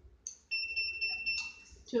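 One steady high-pitched electronic beep from the SHR/OPT hair removal machine, lasting just over a second, as its hair removal handpiece is triggered by button or foot pedal.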